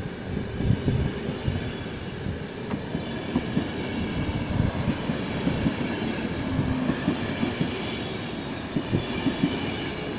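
RegioJet passenger coaches rolling past close by, their wheels knocking irregularly over the track under a steady rumble.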